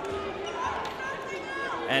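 Basketball game sound in a gymnasium: a ball bouncing on the hardwood court, with players' and spectators' voices in the background.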